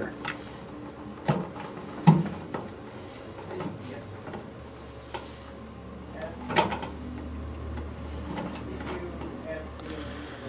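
Scattered small clicks and knocks from wire connectors being pushed onto the spade terminals of an electric fireplace control board and from the wires being handled. The two sharpest clicks come about two seconds in and about six and a half seconds in, over a faint steady low hum.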